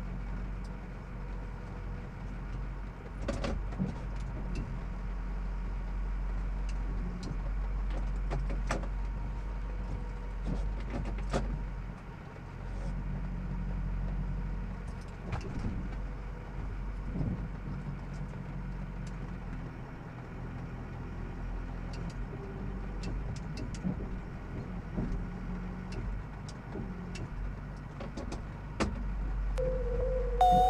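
Ford F-450 tow truck's Power Stroke diesel engine running steadily, with scattered sharp clicks and knocks.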